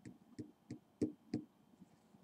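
Pen tapping on paper on a desk: five light, quick knocks, about three a second, in the first second and a half.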